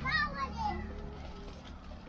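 A young child's high-pitched voice calls out in the first second, then fades into quieter sounds of children playing.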